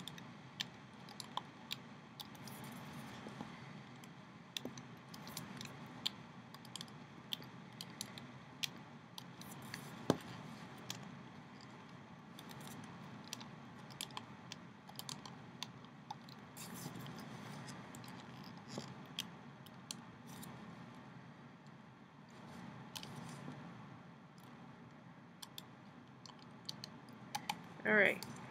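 Small, irregular clicks and soft rubbing as a plastic hook works rubber bands over the pegs of a plastic Rainbow Loom.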